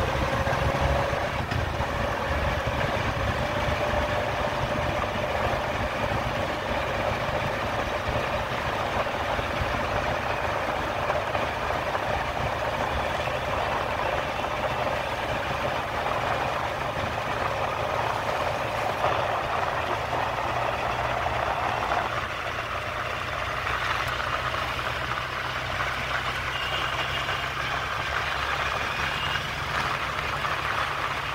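Steady city traffic noise heard from a vehicle moving along a road: the engines and tyres of nearby auto-rickshaws and motorcycles, over a constant low rumble.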